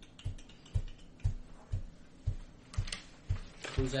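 A steady low thump about twice a second, with scattered light clicks like keyboard typing over it, and paper being handled near the end.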